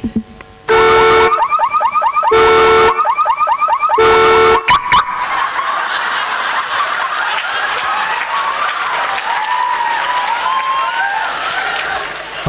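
Car alarm sound effect played loud over the hall's speakers, cycling between a steady blaring tone and rapid rising chirps for about four seconds before cutting off suddenly. Quieter crowd noise from the audience fills the rest.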